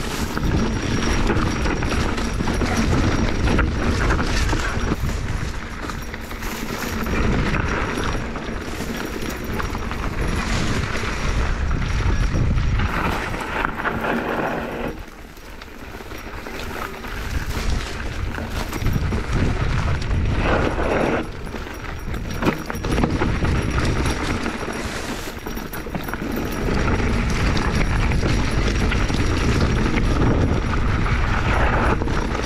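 Dense brush rustling and scraping against a mountain bike and rider pushing through overgrown singletrack, with rattles and knocks from the bike on rough ground and a rumble of wind on the camera microphone. The noise drops off briefly about halfway through.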